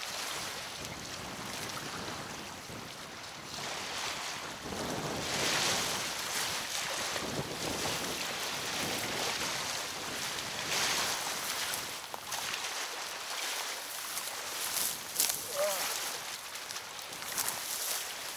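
Strong, gusty wind buffeting the microphone over choppy river waves washing against the bank; the noise swells and eases with each gust. A couple of short sharp clicks come near the end.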